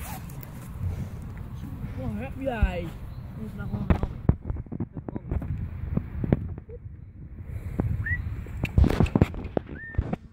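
Boys' voices outdoors over wind rumbling on a phone microphone, with a run of sharp knocks and thuds from the phone being handled, the loudest near the end.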